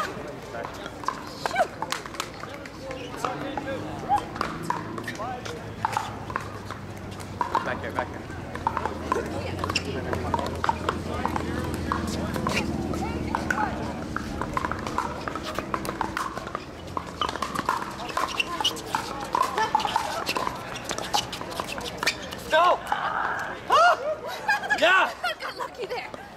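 Irregular hollow pops of pickleball paddles hitting plastic balls on nearby courts, with players' voices and chatter around them.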